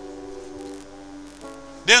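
Soft background music: a sustained keyboard chord held steady, moving to a new chord about one and a half seconds in.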